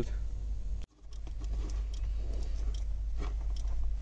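Faint clicks and rustling of hands working at a truck's brake pressure sensor and the wiring around it under the dash, over a steady low hum. The sound cuts out briefly about a second in.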